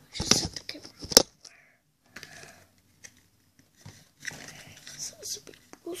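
Handling noise from a phone and a small cardboard candy box: a few sharp rustles and a single loud knock about a second in, then quiet with faint rustling near the end.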